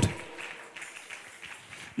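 Faint, scattered applause from a congregation in a large hall, just after the amplified voice dies away.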